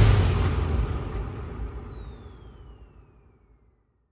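The end of an electronic dance track: the music cuts off into a falling whoosh sweep over a rumbling tail, and both die away to silence about three seconds in.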